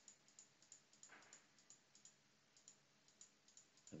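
Faint computer mouse clicks, irregular and several a second, as the points of a curved path are placed one by one. A brief soft noise comes about a second in.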